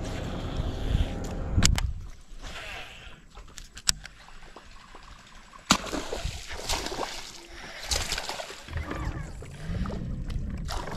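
A cast with a baitcasting rod, then a fast retrieve of a topwater prop bait: reel cranking with water sloshing and splashing, and a few sharp clicks along the way.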